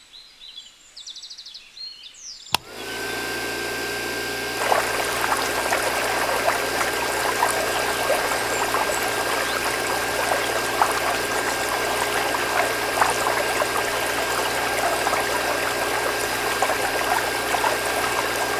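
A small electric water pump switches on with a click about two and a half seconds in and runs with a steady hum and whine. About two seconds later a thin stream of water starts pouring and splashing into the filler hole of a small plastic tank, and keeps going.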